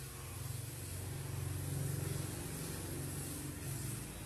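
Tap water running steadily into a kitchen sink, a rushing noise with a low rumble underneath, switched on just before this.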